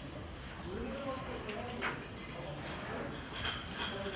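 Cattle-barn background noise: indistinct voices with a few sharp clinks or knocks, such as the neck chains of tethered cattle.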